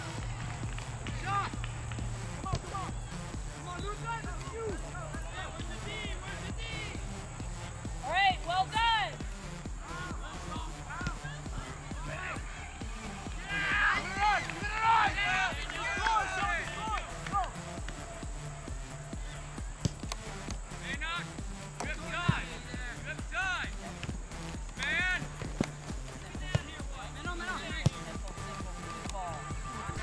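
Distant shouting voices of players and spectators across a soccer field, in scattered short calls that bunch together around a quarter and a half of the way through. A few sharp knocks sound near the end.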